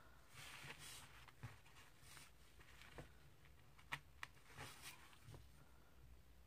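Near silence with faint handling sounds: a pin picking apart the strands of a braided knotting cord, with soft rustling and a few small ticks.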